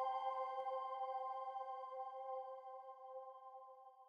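A held chord of ambient background music, a few steady sustained tones with no beat, fading slowly away.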